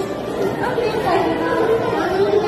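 Indistinct chatter of several children's voices overlapping, with no clear words.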